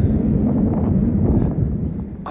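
Steady low rumble of wind buffeting the microphone outdoors.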